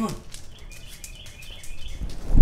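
Birds chirping faintly, a run of short high chirps starting about half a second in.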